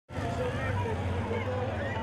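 Crowd hubbub: many voices talking at once, faint and overlapping, over a steady low rumble.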